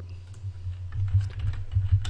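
Typing on a computer keyboard: a quick run of key clicks, entering a layer name, over a low steady hum.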